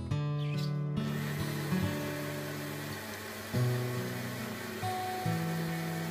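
A small electric blender running, grinding oats and water into a smooth mix; the motor starts about a second in. Acoustic guitar background music plays over it.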